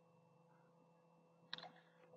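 Near silence, with a faint, brief computer mouse click about a second and a half in.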